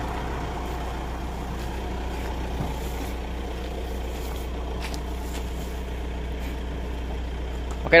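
Steady low hum of a pickup truck's engine idling, with a few faint clicks.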